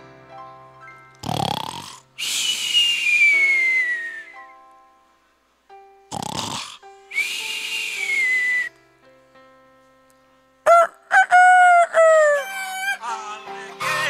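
A man imitating loud snoring into a microphone, twice: a short snort followed by a long whistle that falls in pitch. About eleven seconds in, he does a rooster crow by voice as the wake-up signal.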